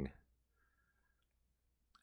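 Near silence: faint room tone after a man's speech stops at the start.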